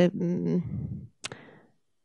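A woman's voice trailing off into a hesitation over a handheld microphone, then a single sharp click a little over a second in before the sound cuts out completely.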